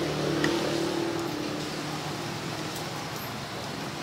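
A motor vehicle's engine passing, its hum fading away over the first couple of seconds, over steady street background noise.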